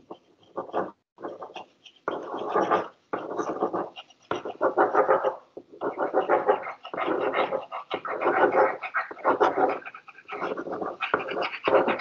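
Pencil or pen scribbling and rubbing on paper close to a microphone, in repeated rough strokes each lasting about half a second to a second.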